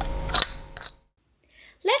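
Two light clicks as small ceramic bowls are handled, over room tone with a low hum. The sound then cuts to dead silence, and a woman's voice starts speaking near the end.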